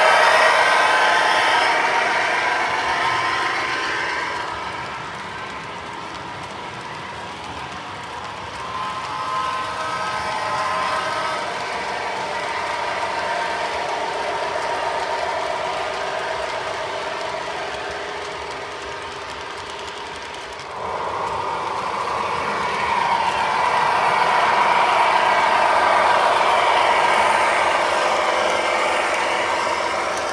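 O-gauge three-rail model passenger train running on metal track: the steady rolling clatter of wheels and cars, swelling and fading as the train passes, with a sudden jump in level about two-thirds of the way through.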